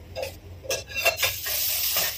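A ladle clinks a few times, then dosa batter poured onto the hot iron tawa starts sizzling: a steady hiss from about a second and a half in that keeps going.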